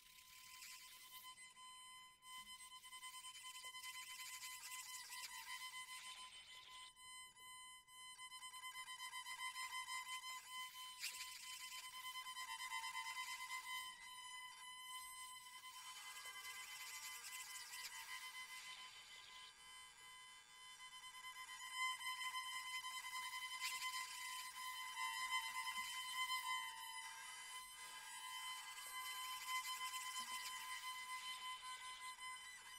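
Autoharp strings bowed with a violin bow, giving a quiet, sustained, high, scratchy tone that swells and fades.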